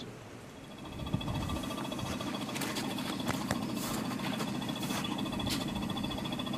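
Vacuum pump of a maple sap tubing system running steadily, a constant mechanical hum with a faint whine, starting about a second in.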